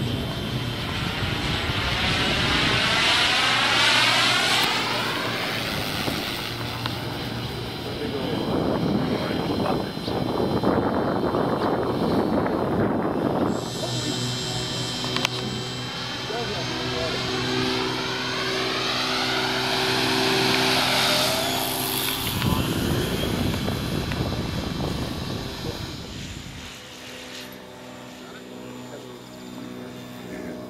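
Giant-scale electric RC biplane flying past, its electric motor and propeller whining; the sound swells and fades as it goes by, twice, and is quieter near the end.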